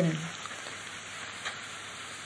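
Steady background hiss of a lecture recording, with the tail of a spoken word at the very start and one faint click about halfway through.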